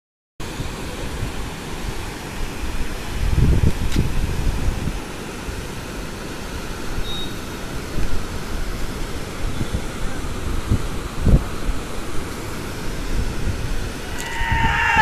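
Steady rush of floodwater in torrent heard from high above, with wind buffeting the phone's microphone in deep rumbling gusts a few times.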